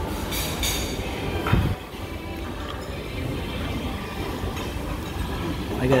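Busy restaurant dining-room ambience: a steady hum of other diners' voices and room rumble, with a few light clinks of tableware early on and a heavier knock about a second and a half in.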